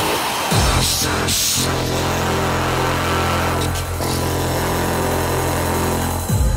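Old-school hardcore (gabber) electronic music in a breakdown: a crash at the start, then a long held, buzzing distorted synth note with no kick drum.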